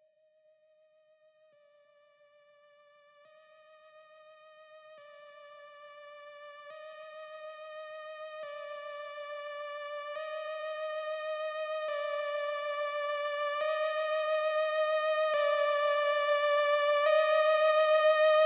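Intro of a trap instrumental: a single wavering synth lead plays slow held notes, changing about every second and a half to two seconds, with no drums. It fades in from silence and grows steadily louder.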